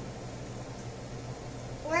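Quiet room tone with a faint steady low hum, then a high-pitched voice starting to speak right at the end.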